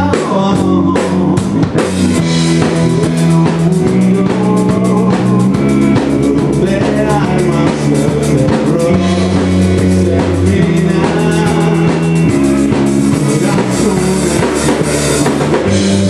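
Live rock band playing: electric guitars over held low notes that change every few seconds, with a steady drum-kit beat.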